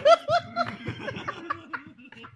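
A person laughing: a quick run of short "ha-ha" bursts in the first second that trails off, with a couple of light knocks about one and a half seconds in.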